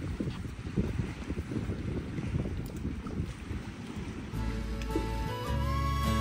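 Wind buffeting the microphone, a gusty low rumble with no steady pitch. About four seconds in, music with held notes comes in over it.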